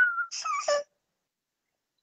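A high, steady whistle-like tone that drifts slightly down and stops a quarter second in, followed by a short vocal sound. Then the video-call audio cuts out to dead silence for about a second.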